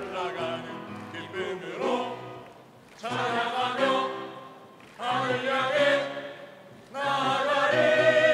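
A mixed choir singing a Korean gospel song. After quicker phrases at the start, held chords swell in at about three, five and seven seconds, each fading before the next.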